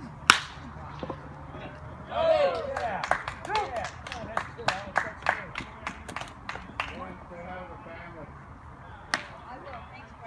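Baseball bat hitting a pitched ball with a single sharp crack, the loudest sound, for a base hit. About two seconds later come shouts and cheers, then a run of hand claps.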